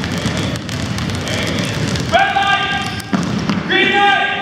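Many basketballs being dribbled at once on a hardwood gym floor: a dense, irregular patter of bounces. Two long, steady high squeals cut through it, one about halfway in and a shorter one near the end.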